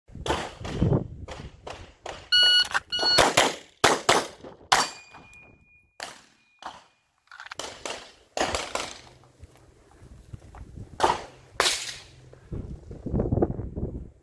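Handgun shots at an outdoor range, sharp cracks fired in quick strings with short pauses between them. Two short electronic beeps come a couple of seconds in, and a steady high tone holds for about two and a half seconds near the middle.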